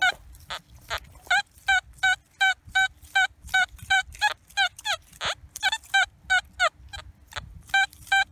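XP Deus metal detector beeping through its speaker as the coil is swept back and forth over a target: short clear tones, about three a second, some bending in pitch, over a faint steady hum. The tone repeats on every pass, the sign of a diggable signal.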